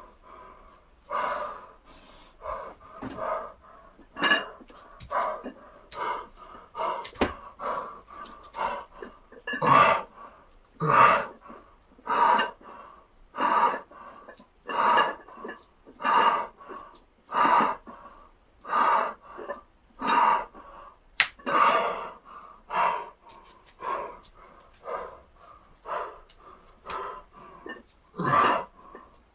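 A man panting hard from exertion, with loud breaths coming steadily a little more than once a second: he is out of breath from circuit training.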